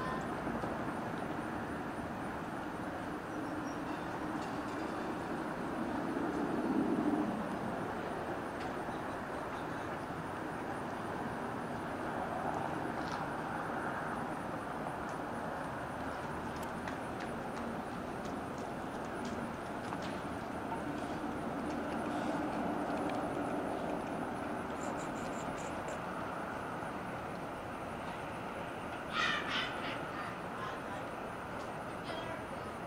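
Steady rumble of road traffic, swelling about six seconds in and again a few times later, with a short sharper sound near the end.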